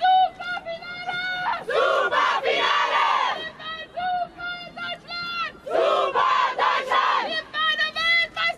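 Call-and-response celebration chant by a football team: one woman calls out short sung phrases and the seated group shouts back together, twice over.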